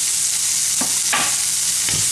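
Sliced spring onions and parma ham sizzling in hot oil in a frying pan, with a few scrapes of a wooden spatula stirring them in the second half.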